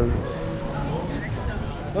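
Outdoor background noise: a steady low rumble with faint distant voices.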